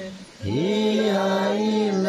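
Liturgical chant at Mass: a single voice holding long, steady notes. It breaks off briefly just after the start, then slides up into the next held note.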